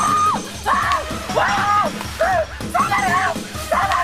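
A young woman screaming in a run of short, high cries, about six in four seconds, while being wrestled to the ground by attackers, with background music underneath.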